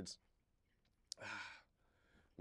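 A man's breath, a short sigh about a second in, just after a small click, with near silence around it.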